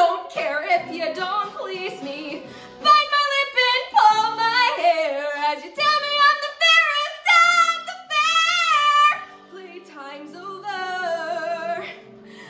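A woman singing solo, belting long held notes with a wide vibrato and runs, with no words made out; about nine seconds in the voice drops to a softer, lower line.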